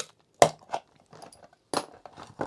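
Plastic case of a Commodore 1541-II power brick being pried apart at its super-glued seam with a screwdriver: a sharp crack about half a second in, a smaller one right after, faint ticks, then another crack near the end as the glue gives way.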